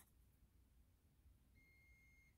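Near silence, with one faint steady electronic beep of under a second near the end: a multimeter's continuity tester sounding as a wire pair is matched.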